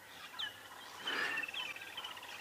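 Wild birds calling: a couple of short, high, downward-slurred whistles and a run of quick repeated high notes.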